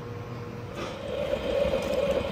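Faint room tone with a thin steady hum, then from under a second in a steady hiss comes up: a 3.5-inch gauge live-steam model locomotive standing in steam on test.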